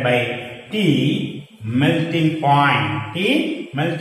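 Only speech: a man's voice talking in short phrases with brief pauses.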